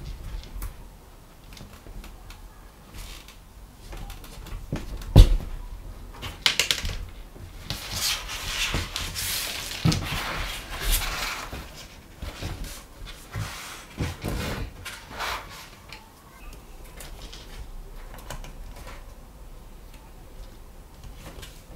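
Hand-stitching and handling stiff leather: thread drawn through stitch holes, leather rubbing and flexing as the stitched visor is bent, and scattered light knocks on the cutting mat, the sharpest about five seconds in. The longest rustle of leather rubbing comes around the middle.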